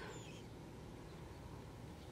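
Quiet room tone with no distinct sound.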